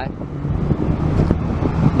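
Low, even rumble of car traffic on the street.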